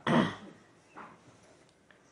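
A man's short, breathy vocal sound like a throat-clear, then near silence.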